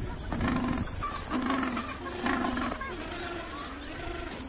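Penguins in a colony calling, with several harsh pitched calls following one another about a second apart.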